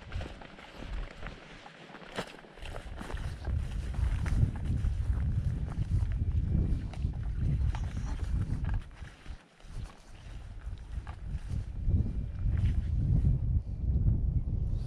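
Wind buffeting the microphone in low, rumbling gusts that ease off briefly twice, with scattered footsteps on a dirt track and grass.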